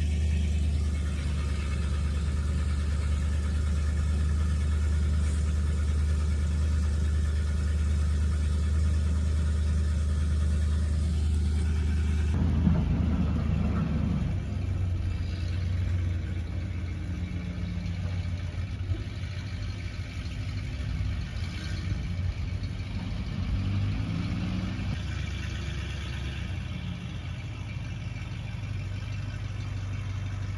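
Pickup truck engine running with a steady low hum. After a cut about twelve seconds in it goes on less steadily, with a few short rises and falls in pitch.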